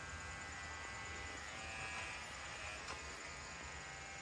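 Electric hair clippers running with a steady buzz as they cut a child's short hair.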